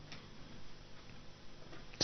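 Faint room tone with a few soft, irregular ticks, in a pause in a man's speech.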